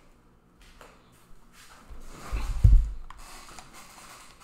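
A person settling back in front of a close desk microphone: rustling and handling noises, with a heavy low thump about two and a half seconds in.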